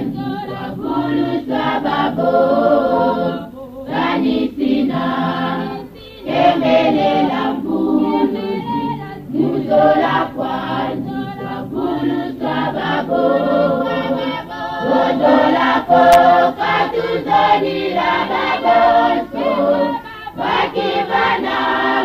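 A choir singing a song in phrases with brief pauses between them. A line of lyrics is sung near the end.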